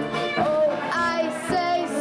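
A young woman singing a jazz standard with a small traditional jazz band, with violin and drums audible, over a steady beat.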